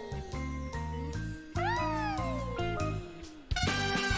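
Stage band music: held chords under a high note that swoops up and then slides slowly down. About three and a half seconds in, the band cuts in loud with a swing tune.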